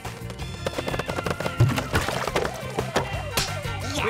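Cartoon sound effect of a long row of small boxes toppling one after another like dominoes, a quick run of light clacks, over background music.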